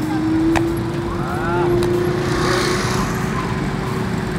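Busy beach soundscape with quad bikes riding about on the sand: a steady low drone runs throughout over an even rush of surf and wind. Faint voices of people nearby come and go, with a brief call about a second in.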